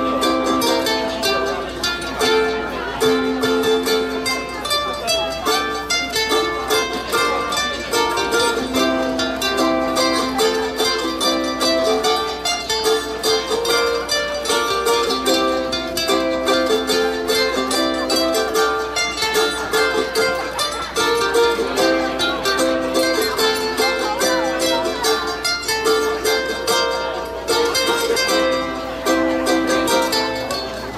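An ensemble of ukuleles strumming a tune together in a steady rhythm.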